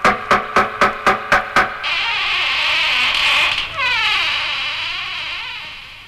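Opening of a 1970s reggae single: a pitched note struck rapidly, about four times a second, stops about two seconds in and gives way to a high, wavering whine with falling glides that fades out.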